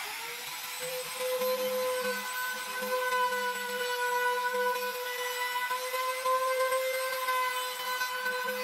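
Trim router starting with a brief rising whine, then running steadily at high speed with small changes in level as it trims the edges of the laminated plywood table.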